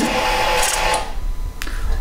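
Ducati Panigale V4 S electrics priming just after the ignition is switched on: a steady electric whirr that stops about a second in, then a single faint click.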